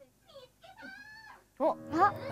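Women's wordless vocal reactions: soft, wavering 'ooh'-like sounds, then a sudden louder, higher excited exclamation near the end.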